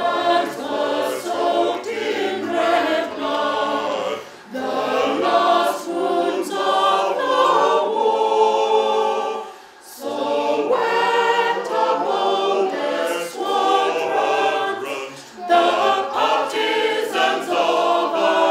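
A choir of mainly women's voices singing in harmony without accompaniment, in phrases of about five seconds with short breaks between them.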